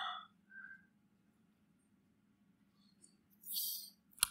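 Near silence in a lecture hall, with a faint short whistle-like tone about half a second in and a brief soft hiss near the end.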